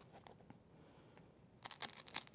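Serrated plastic craft knife pushed into a painted styrofoam ball, a quick run of crunching, scraping clicks starting about a second and a half in.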